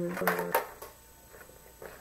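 A few sharp clicks and rustles of small items being handled out of a handbag in the first half-second, after a brief bit of a woman's voice, then quiet room tone.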